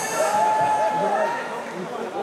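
Indistinct male speech, with no music and no clear sound other than the voice.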